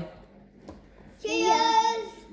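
A young child's high voice giving a drawn-out, sing-song call for under a second, starting just over a second in.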